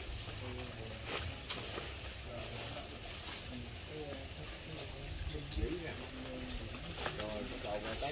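Faint, indistinct voices over a steady hiss and low rumble, with a few sharp clicks.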